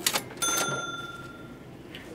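Cash-register "ka-ching" sound effect serving as a phone's notification: a brief clatter, then a bright bell ring that fades away over about a second.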